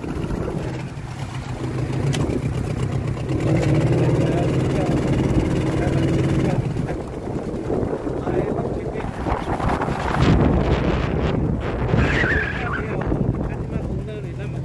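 A boat engine running steadily, its hum stronger for a few seconds about a third of the way in, then easing off.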